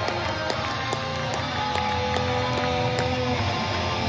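Live electric guitar played through a stage amplifier, sounding held notes.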